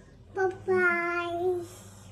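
A toddler's high voice sings out a short syllable and then one long held note of about a second.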